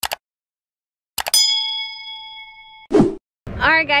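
Mouse-click sound effects, then a bell-like ding that rings out and fades over about a second and a half, as in a subscribe-button animation. A short burst of noise follows just before a woman starts talking.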